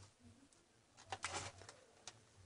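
Multimeter test probes and their leads being lifted off an 18650 lithium-ion cell: a quick cluster of small clicks and rattles about a second in.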